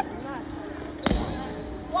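A basketball bouncing once on a hardwood gym floor about a second in, a single sharp thud.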